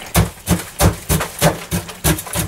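Repeated knocking thuds, about three a second, from frozen food being broken up with a utensil while cooking.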